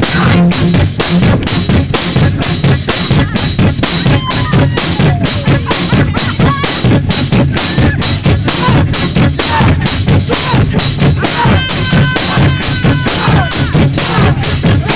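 Live band playing loud, with the drum kit to the fore: kick and snare hammering out a fast, steady beat of about four or five hits a second.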